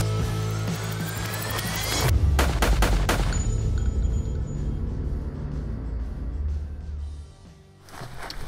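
Intro logo sting: music with a rising sweep, then a rapid burst of sharp hits like gunfire about two seconds in, followed by a low drone that fades out near the end.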